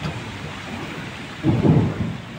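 Steady rain falling, with a brief louder low rumble about one and a half seconds in.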